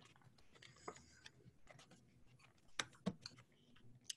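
Faint handling of a sheet of paper being folded and pressed flat by hand: a few soft rustles and taps, about a second in and again near three seconds, otherwise near silence.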